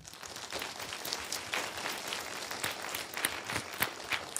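Audience applauding: many hands clapping together in a steady, dense patter that starts suddenly.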